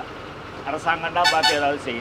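Men calling out in short raised phrases, over the low, steady running of a stopped heavy goods truck's engine.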